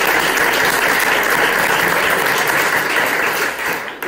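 A small group of people applauding, steady clapping that tapers off near the end.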